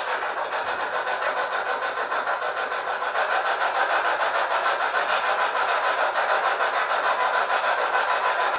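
A steady hissing drone with a faint, fast, even flutter.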